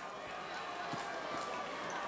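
Faint stadium ambience: a low even wash of crowd noise from the stands that slowly swells, with a couple of soft knocks about a second in.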